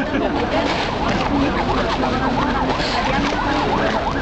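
Fast warbling siren, its pitch sweeping up and down several times a second, over a steady low rumble and voices.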